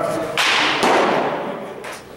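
A pitched baseball smacking into a catcher's leather mitt with a sharp pop that rings through a large indoor hall, followed by a second sharp pop under half a second later.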